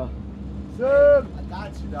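A man's voice making a single drawn-out syllable about a second in, over a steady low background rumble.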